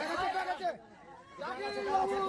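People's voices talking and chattering, with a brief lull about a second in before the voices pick up again.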